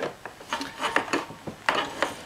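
Handling noise from a folding bicycle being packed: a run of irregular clicks and light knocks as a crush-protector tube is pushed through the folded bike's wheels and frame and seated in its lower piece.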